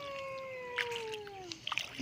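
A person's high voice holding one long drawn-out "oooh" that glides slowly down in pitch for under two seconds, followed near the end by a few faint taps.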